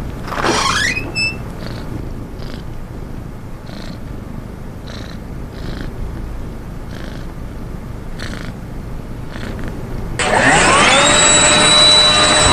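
A domestic cat purring close up: an even low rumble with soft pulses about once a second. It opens with a short rising sweep, and about ten seconds in a much louder sound with rising, then held tones cuts in over it.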